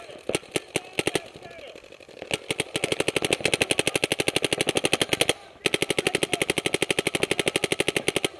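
Paintball marker firing: a few scattered shots in the first two seconds, then long strings of very rapid shots at about a dozen a second, broken by a short pause just past the middle.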